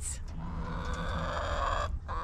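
Hens in a chicken run giving a drawn-out call that swells over about a second and a half and then stops suddenly, over a steady low rumble.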